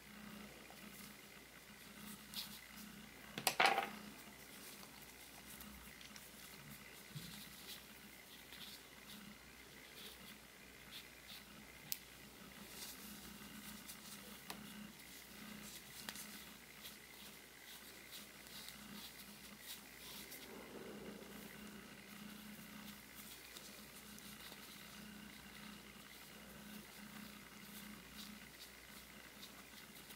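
Faint rustling and small ticks of hands pushing fluffy fibre stuffing into a crocheted yarn piece, over a faint steady hum. One brief louder sound comes about three and a half seconds in.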